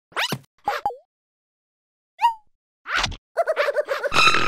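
Cartoon sound effects: two short swishing sounds with falling pitch, a brief squeaky chirp, then a swish and a rapid rattling run of quick pulses, about ten a second, near the end.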